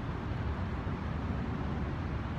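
Steady low rumble of outdoor noise: wind on the phone's microphone mixed with city background noise.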